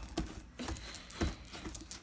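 Hands kneading and pressing a lump of fluffy glitter slime on a tabletop, with a few soft squishes and taps.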